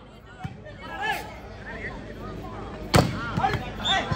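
A volleyball being struck during a rally: a few sharp hits, the loudest about three seconds in, with short shouts from players and crowd between them.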